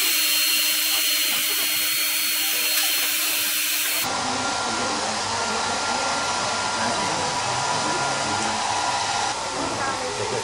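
Handheld electric hair dryer blowing steadily, drying a handmade cockroach craft. The first few seconds carry a high whine; about four seconds in the sound changes abruptly to a fuller, lower rush.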